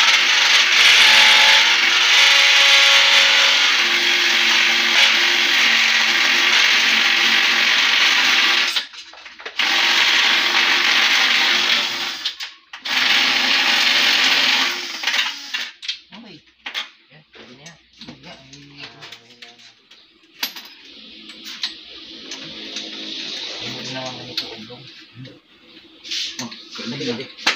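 Cordless drill running in long stretches under load, one of about nine seconds followed by two of about three seconds, then clicks and rattles of handling and a quieter run near the end.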